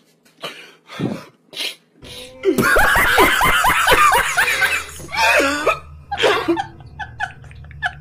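A man laughing loudly and hysterically, in quick high-pitched bursts from about two and a half seconds in, then tailing off into shorter wheezing laughs. Before it come a few short, breathy sobs.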